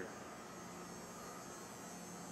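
A steady, faint background hum, with no other sound standing out.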